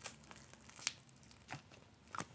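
Mostly quiet, with a few brief faint clicks and crackles; the loudest comes a little under a second in.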